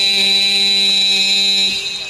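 A male voice holding one long sung note of an Arabic devotional qasidah chant through a PA sound system, ending near the end, over a steady high-pitched whine.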